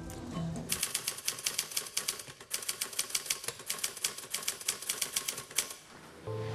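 Typewriter keystrokes clattering in a rapid run, with a brief break after about two seconds.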